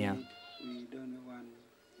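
A man's voice, faint, speaking under a dubbed translation. It rises slightly in pitch at first, then holds a drawn-out vowel at a steady pitch before trailing off.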